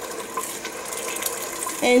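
Wooden spoon stirring mole sauce thinned with chicken broth in a stainless steel pot: a steady wet sloshing with small scraping clicks against the pot.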